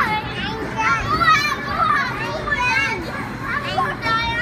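Young children's excited voices, shouting and chattering, over steady room noise. A spoken phrase, "a good time", is heard at the very start.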